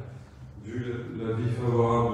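Speech only: a man talking, with a short pause at the start before he carries on.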